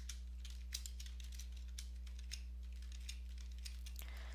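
Typing on a computer keyboard: a run of light, irregular key clicks over a steady low hum.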